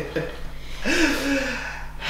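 A woman laughing breathily, with a short voiced laugh that falls in pitch about a second in.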